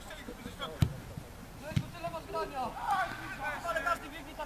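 Two sharp thuds about a second apart, a football being kicked during play, followed by players shouting across the pitch.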